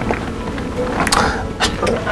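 Handling sounds of a mains power cord being plugged into the side receptacle of an electrical safety analyzer, with two short clicks about a second and a second and a half in, over steady room noise.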